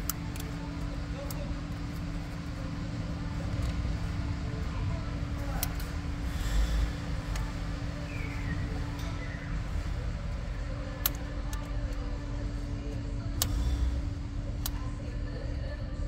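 A steady low hum and rumble of background noise, with a few sharp light clicks of hand tools, a screwdriver and feeler gauge, working at a rocker-arm adjusting screw in the last few seconds.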